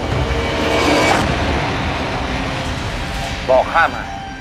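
Sound-design effect of a magic power being cast: a heavy low rumble with a whooshing swell that peaks about a second in, under steady tones. Two short, loud rising-and-falling voice-like sounds come near the end.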